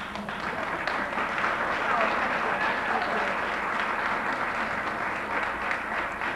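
Audience applauding steadily, greeting a speaker who has just been introduced.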